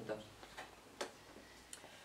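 Quiet room tone with a few faint, sharp clicks, the clearest about halfway through.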